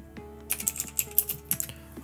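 Computer keyboard typing: a quick run of keystrokes starting about half a second in, over soft background music.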